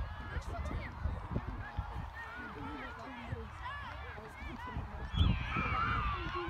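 Repeated short honking bird calls, with wind rumbling on the microphone.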